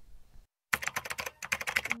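Keyboard typing sound effect: two quick runs of rapid clicks with a short break between them, starting after a moment of near silence.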